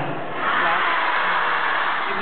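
Concert audience cheering and screaming, a dense crowd roar that swells about half a second in.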